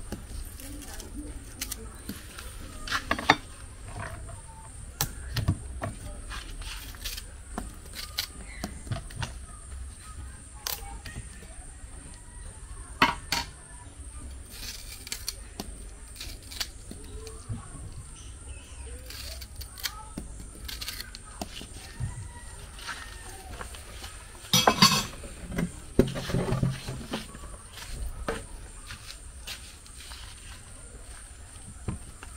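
A kitchen knife cutting and peeling the skins off green plantains: scattered short clicks and scrapes of blade on peel, with a louder cluster of knocks about 25 seconds in, over a steady low hum.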